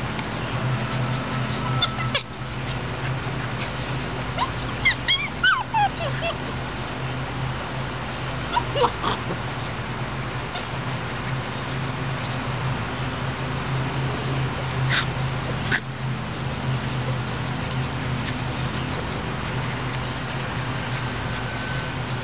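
Borador puppies giving a few short, high-pitched yips and whimpers, clustered about five and nine seconds in, over a steady low hum and a few sharp clicks.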